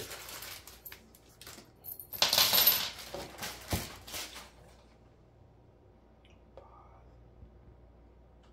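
Small metal hardware, bolts, washers and pins, tipped out of a plastic bag and clinking onto a wooden floor: scattered clicks, a loud clatter about two seconds in, and a dull thump near four seconds.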